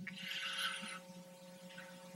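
A pause between sentences: faint room tone of steady low hum and hiss on an old recording, with no other distinct sound.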